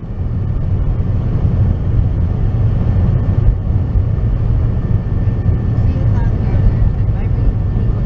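Steady, loud low rumble of road and wind noise inside a moving car's cabin at highway speed, with faint voices in the background about two-thirds of the way through.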